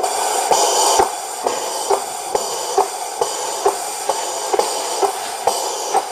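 Sound decoder of a 1:32 Gauge 1 Class 59 model steam locomotive playing its standing-engine sounds through the model's speaker: a steady hiss with a regular knock a little over twice a second. The sound set is borrowed from another KM1 locomotive, not the Class 59's own.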